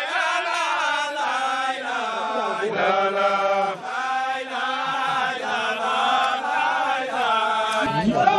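A group of men chanting a Sufi devotional chant together, in long melodic phrases with sliding pitch and a brief break a little before the middle.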